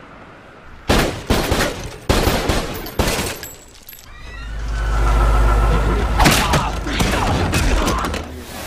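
Action-film gunfight sound effects: four sharp, loud bangs in the first three seconds, then a deep rumble that swells up in the middle, then more sharp hits near the end.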